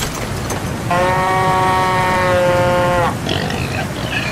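A single held animal call, added as a sound effect: one steady pitched call of about two seconds that dips slightly as it ends, over a constant hiss of rain. A short scratchy sound follows near the end.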